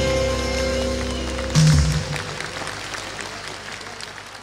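A live rock band holding its closing chord, ended by a loud final drum and cymbal hit about one and a half seconds in. Crowd applause follows and fades away.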